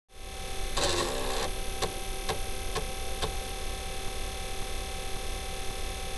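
A steady electrical hum with a brief noisy rustle about a second in, then four sharp clicks about half a second apart, as of a computer mouse being clicked.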